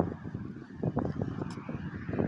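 Low outdoor background rumble, with faint scattered knocks and clicks, heard between a man's sentences.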